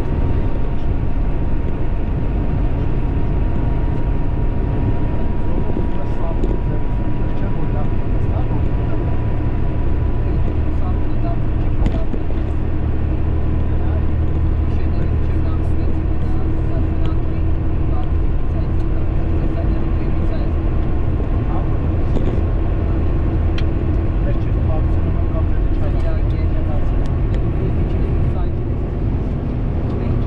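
A car driving at road speed: steady road and engine noise with a strong low rumble, and a faint whine that rises slowly in pitch.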